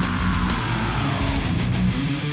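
Distorted electric guitar, a Yamaha Pacifica, playing a fast melodic death metal riff of repeated low notes over a backing track with drums.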